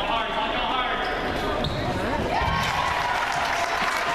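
A basketball bouncing on a hardwood gym floor, with a few dull thumps about two and a half seconds in, over the voices and chatter of a crowd in the gym.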